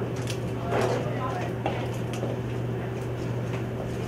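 Felt-tip marker tapping and stroking on a whiteboard, a few short ticks as note heads and letters are written, over a steady low room hum and faint classroom voices.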